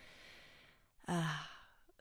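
A woman's soft, audible breath, followed about a second in by a drawn-out hesitant "uh" that fades away.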